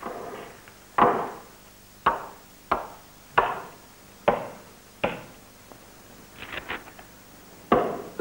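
Wood being struck by a tool: six heavy blows at uneven intervals, each ringing briefly, then a few lighter knocks near the end.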